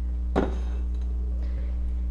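A single light knock about half a second in as a ceramic vase is handled on the kitchen counter, with a fainter tick later, over a steady low hum.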